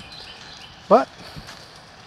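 A man says a single word about a second in, over faint steady outdoor background noise.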